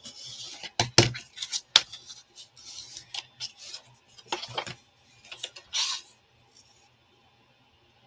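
A bone folder scraping over black cardstock on a cutting mat to burnish it, with sharp clicks and taps as the card is handled. The sounds thin out into a few taps and a rustle past the middle.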